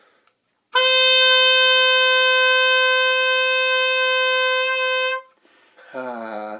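Oboe playing one long, steady C, the note in the third space of the staff, held about four and a half seconds from about a second in and stopping cleanly near the end.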